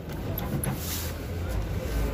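Background hubbub of faint voices over a low, steady rumble, with no single clear source standing out.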